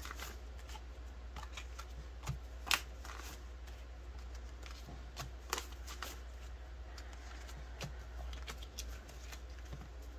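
Australian polymer banknotes being flicked through and counted by hand: a run of crisp plastic rustles and snaps, the sharpest about three seconds in.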